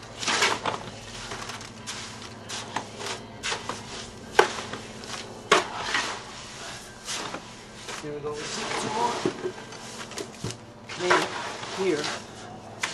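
Garden fork working a wet clay-and-straw cob mix in a wheelbarrow: irregular scraping and rustling of straw and clay, with sharp knocks of the fork against the barrow, the loudest about four seconds in.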